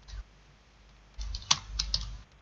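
Keystrokes on a computer keyboard: two light clicks at the start, then a quick run of keys about a second in. One sharp, louder key strike is the Enter that runs the typed command.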